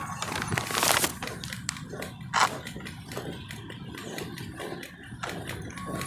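Wind buffeting a phone microphone, a steady low rumble with louder gusts about a second in and again near halfway. Scattered knocks and rattles run through it as a manual wheelchair rolls over asphalt.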